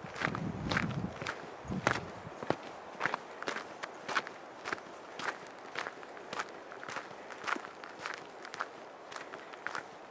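Footsteps of someone walking on a dirt trail, about two steps a second, with a brief low rumble in the first second.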